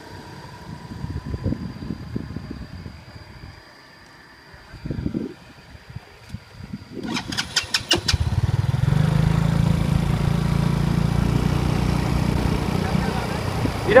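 A motorcycle engine is started about eight seconds in, right after a quick run of sharp clicks, and then runs steadily to the end. Before that there are scattered low knocks and handling noises.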